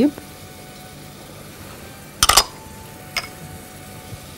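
Two sharp knocks close together about two seconds in, followed by a fainter tap about a second later: a spatula and small glass bowl knocking against a stainless-steel saucepan as spice is tapped into the pot.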